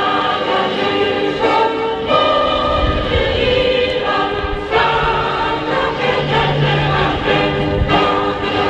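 A group of voices singing together in unison, holding long notes that change every second or two.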